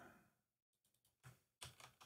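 A few faint computer keystrokes, short clicks in the second half, otherwise near silence.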